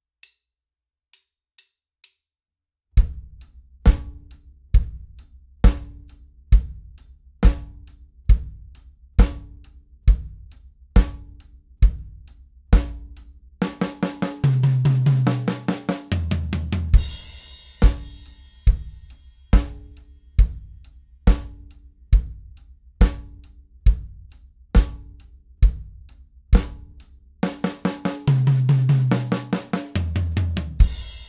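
Acoustic drum kit playing a slow four-on-the-floor rock groove: bass drum on every beat under hi-hat and snare. Three bars of groove lead into a one-bar fill of sixteenth notes on snare, rack tom, snare and floor tom, which lands on a crash cymbal with the bass drum. The beat starts about three seconds in after a few faint clicks, and the cycle comes round again with a second fill at the end.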